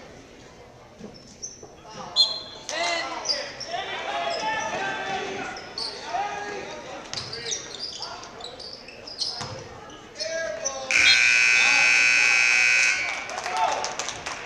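Gymnasium scoreboard buzzer sounding one loud, steady blast of about two seconds near the end, signalling the end of the third quarter. Before it, players and spectators are shouting in the gym.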